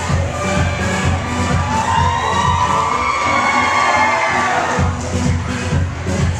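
Dance music with a steady bass beat; about two seconds in the beat drops out for roughly three seconds while an audience cheers and shrieks, then the beat comes back.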